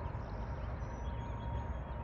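Outdoor background noise: a steady low rumble with faint thin tones above it.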